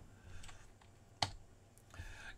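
A single sharp click, the click that advances the presentation to the next slide, over faint room tone.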